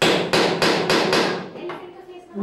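Hammer tapping the head of a fine hand punch set against a small piece on a workbench block: about five quick strikes, some three a second, then a few fainter knocks.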